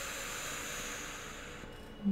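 A long breath out through the mouth, a soft, breathy hiss that fades away near the end.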